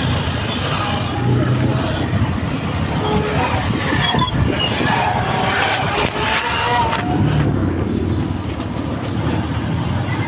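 Motor vehicle engines running close by in a stopped or slow-moving line of traffic, a steady low rumble, with indistinct voices and a few short knocks.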